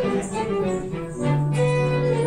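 Live dance band playing the tune for an English country dance, a steady run of notes with a low held note coming in just past the middle.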